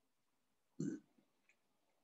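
A single short throat sound from a man, lasting about a quarter of a second, about a second in; otherwise near silence.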